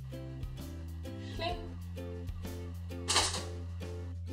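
Background music with a steady plucked beat, with a short burst of noise about three seconds in.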